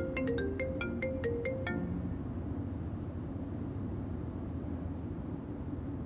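Smartphone ringtone for an incoming call: a marimba-like melody of quick, short notes that plays until a little under two seconds in and then stops. A low steady rumble stays underneath throughout.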